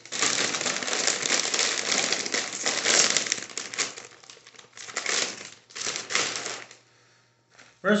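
A bag of Doritos 3D Crunch chips crinkling as it is handled and pulled open. The crinkling is dense for the first few seconds, then comes in shorter bursts, and stops about a second before the end.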